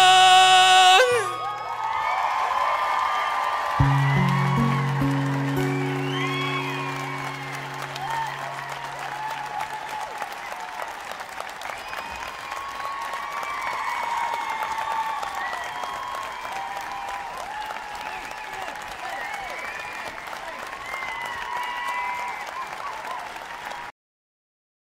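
A singer's loud held final note ends about a second in, giving way to a live audience cheering and applauding. A low piano-like chord enters about four seconds in and fades out over several seconds while the cheering goes on, and the sound cuts off abruptly at the end.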